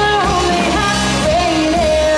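Live rock band playing: drums, electric guitars and bass, with a woman singing lead in long, bending held notes.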